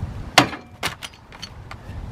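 Master Lock trailer coupler lock cracking under a steel pry bar: one sharp loud crack about half a second in, then a few smaller metallic clicks as it comes loose. The brittle soft metal of the lock body is breaking through.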